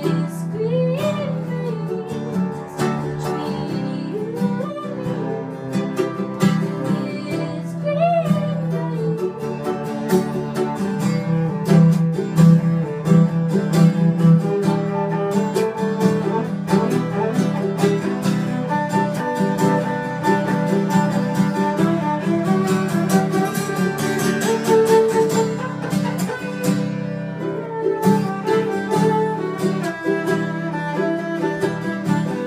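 Folk song instrumental passage: acoustic guitars strummed in a steady rhythm under a bowed cello holding long low notes. Sliding melodic phrases rise and fall in the first several seconds.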